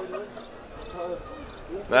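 Quiet speech: a man's voice talking softly and briefly, with a louder voice starting right at the end.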